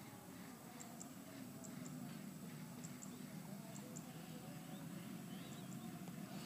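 Faint background noise: a low steady hum with scattered faint, distant chirps.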